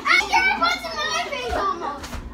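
A boy yelling a drawn-out "ahhh" while straining, among excited children's voices.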